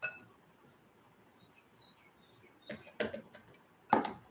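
Kitchen bowls and a mesh flour sieve knocking against each other and the counter while flour is sifted into a glass bowl: a click at the start, a few knocks about three seconds in, and a sharper knock near the end.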